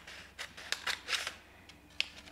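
Scissors cutting through a paper gift bag: several crisp snips in quick succession over the first second or so, then quieter.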